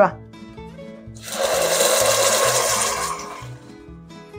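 Red chile purée hitting very hot olive oil in a pot, sizzling and spattering loudly for about two seconds, starting about a second in. The oil is too hot, which makes the sauce splatter.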